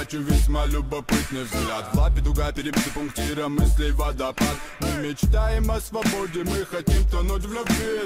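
Hip hop track with a man rapping in Russian over a deep bass line that hits about every second and a half.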